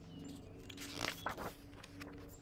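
Pages of a picture book being turned, a short papery rustle and crackle about a second in.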